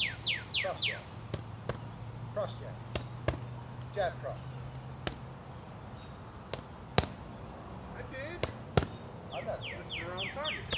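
Punches landing on handheld boxing focus mitts: an irregular series of sharp slaps, the two loudest about 7 and 9 seconds in. A bird's quick run of descending chirps sounds in the first second.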